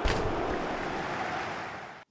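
A whooshing transition sound effect, a rush of noise like surf that hits sharply at the start and then fades away, marking a cut between sections.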